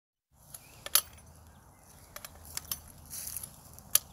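A handful of short, sharp metallic clicks and knocks, irregularly spaced, the loudest about a second in and another just before the end, with a brief rustling hiss between.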